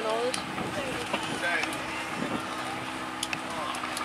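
Pickup truck engine running steadily at low revs, with people talking over it.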